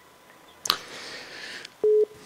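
Telephone line noise: a second of open-line hiss begins with a click, then a short, loud, steady beep tone near the end.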